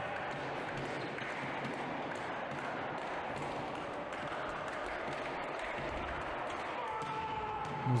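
Steady background noise of an indoor volleyball hall between rallies, with faint distant voices.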